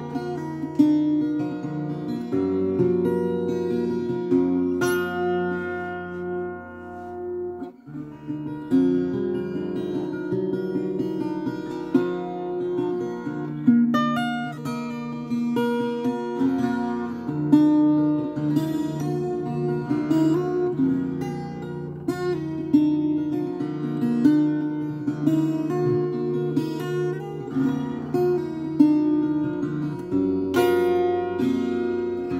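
Solo 12-string acoustic guitar, strummed and picked in a lively tune of chords and melody notes, with a brief break about eight seconds in.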